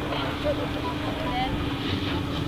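A steady mechanical hum: one unbroken low drone over a haze of noise, with faint voices in the distance.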